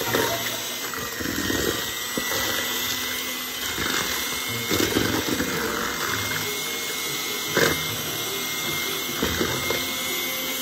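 Electric hand mixer running steadily, its beaters whisking thick banana bread batter, with a few sharper knocks, the loudest a little past halfway.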